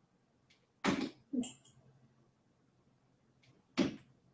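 Darts hitting a Winmau Dart Dock miniature dartboard hung on a wall bracket: a sharp hit about a second in, followed at once by a second knock, and another hit near the end.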